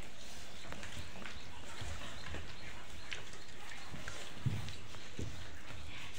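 Scattered light clinks and taps of steel plates as children eat rice with their fingers, with one louder low thump about four and a half seconds in.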